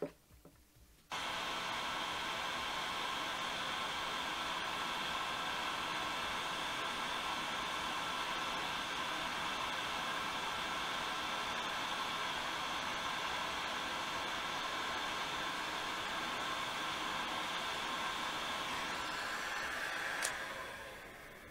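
Electric heat gun switched on about a second in and then blowing steadily, a fan-driven rush of air with a faint motor whine, reflowing solder paste on a small circuit board.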